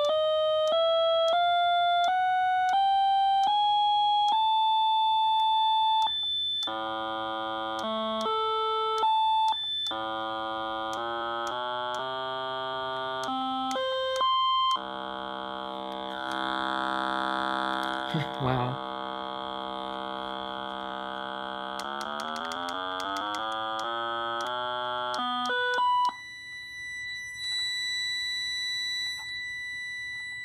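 Seiko ST1000 chromatic tuner's built-in speaker playing its electronic reference tone, stepped note by note up the scale for about six seconds and then switched through different octaves. The low notes come out buzzy and full of overtones, almost distorted, and a thin high tone sounds near the end.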